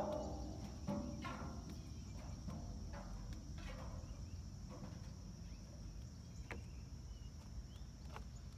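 Steady high insect chirring, typical of crickets, with irregular footfalls and creaks on wooden dock boards about once a second.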